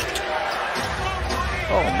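A basketball bouncing on a hardwood court, heard over steady arena crowd noise.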